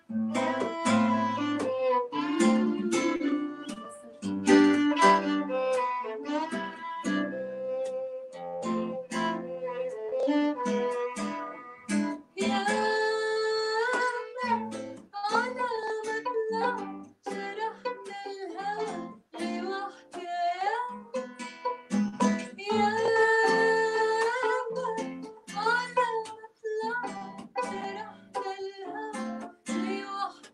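Live acoustic trio: a classical guitar picking with a violin, and a woman's voice singing long, wavering notes that come in about twelve seconds in.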